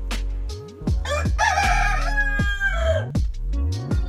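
A rooster crows once, for about two seconds starting about a second in, its pitch falling at the end. It sounds over background music with a steady beat and deep sliding bass notes.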